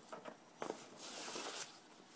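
Cardboard packaging being handled: a couple of light taps, then a brief rustling slide about a second in.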